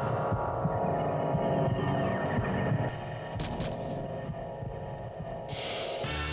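Low, droning soundtrack of a TV advert, with a steady hum and throbbing pulse. It thins and drops in level about halfway through. There is a short burst of hiss about three and a half seconds in, and a sudden loud rush of hiss near the end.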